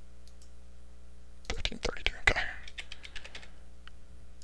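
Typing on a computer keyboard: a quick run of keystrokes about a second and a half in, entering a number, then a single click near the end. A faint steady hum sits underneath.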